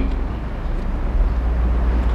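Steady low electrical hum with a faint hiss from a live microphone and sound system, with no speech over it.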